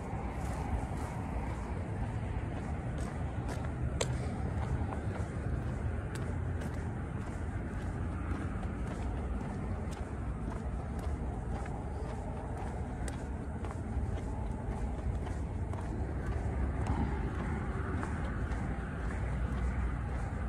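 Steady outdoor rumble of distant road traffic, with a few faint scattered ticks.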